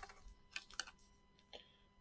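Near silence with a few faint light clicks of trading cards being handled, several bunched about halfway through.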